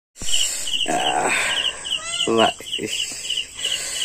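High chirps from a small animal come in quick clusters of two to four, repeating steadily several times a second, over a steady thin high whine, while a man talks.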